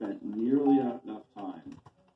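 A man's voice heard over a video-call connection, its words indistinct, in two stretches of speech with a short break after the first second.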